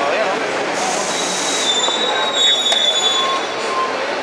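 Passing street traffic noise with a high-pitched squeal from about one and a half seconds in, lasting about two seconds.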